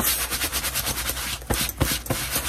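Hand sanitizer wipe scrubbed briskly over the fabric of a vest, a rapid run of rubbing strokes, with a couple of dull bumps near the end.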